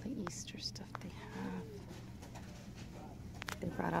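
Quiet shop ambience: a steady low hum, a few small clicks, and a faint distant voice about a second and a half in. A woman starts speaking right at the end.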